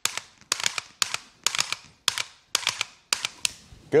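Dry-fire trigger clicks from an AR pistol fitted with a Mantis Blackbeard, which resets the trigger after every pull: a quick run of sharp clicks in clusters of two or three, about every half second.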